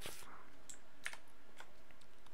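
A few faint, sharp computer clicks, about four spread over two seconds, over a steady low hiss. The first comes as the Save button is clicked.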